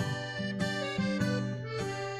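A song playing, here in the instrumental gap between two sung lines, with long held notes.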